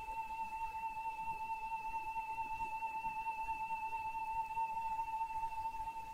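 Steady electronic test tone held at one unchanging high pitch; it is the tone being displayed as a wave on an oscilloscope to demonstrate amplitude.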